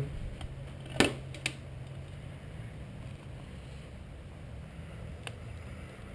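Light handling clicks from a coolant hose being fitted at the water pump: a sharp click about a second in, a lighter one just after, and another near the end, over a low steady hum.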